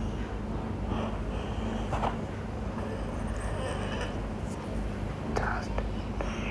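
Steady low hum with faint whispering over it, and light clicks about two seconds in and again near the end.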